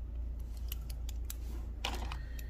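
Pen writing numbers on journal paper: a run of short scratchy strokes, ending in a louder scrape just before the end, over a steady low hum.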